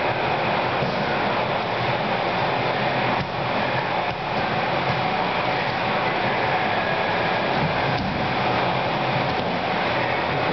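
A steady, even rushing noise with a faint hum and no clear single events.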